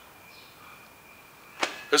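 A pause of quiet room tone with a faint steady high-pitched whine. About a second and a half in comes one short sharp sound, and a man starts speaking just before the end.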